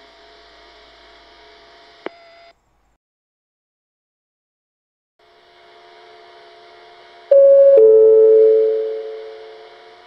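Two-note station PA chime, a higher tone followed by a lower one, ringing out over about two seconds as the lead-in to a platform announcement. Before it, a faint steady hum with a single click, broken by a few seconds of silence.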